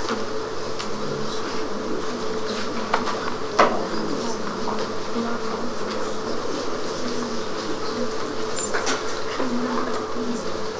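Classroom room tone: a steady buzzing electrical hum over a background hiss, with scattered small clicks and one sharper click a little over three and a half seconds in.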